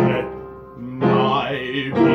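Piano music: held chords that fade about half a second in and swell back about a second in.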